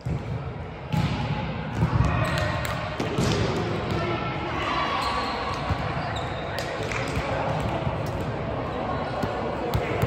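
Background chatter of many voices in a large indoor sports hall, with a volleyball now and then bouncing on the court floor.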